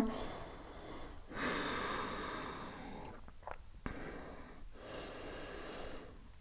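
A person breathing slowly while holding a yoga pose: a long breath starting about a second in, then a fainter one in the second half.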